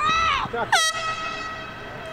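Players shouting, then a single loud, horn-like signal blast a little under a second in that holds one steady pitch and fades away over about a second.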